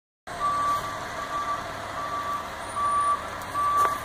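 A vehicle's reversing alarm beeping at an even pace, five single-pitched beeps a little over one a second, over a faint background hum.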